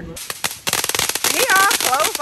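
A ground firework going off on the street, a rapid run of crackling pops starting a little over half a second in and carrying on to the end.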